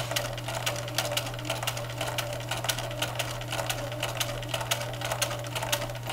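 Bernina sewing machine stitching steadily: a rapid, even run of needle strokes over the motor's whir as fabric is fed through.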